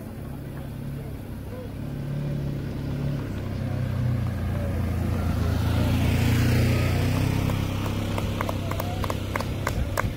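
A motor vehicle's engine running past, growing louder to a peak about six to seven seconds in and then fading. Near the end come a run of sharp clicks or taps.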